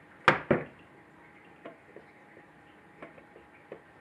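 Two sharp knocks about a quarter second apart, then a few light clicks and taps: a screwdriver and hands against the Wanhao Duplicator i3's sheet-metal controller case while its bottom panel is worked loose.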